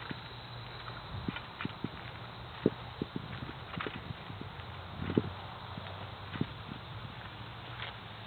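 Footsteps on pavement as someone walks around a parked SUV: irregular hard steps, over a faint steady low hum.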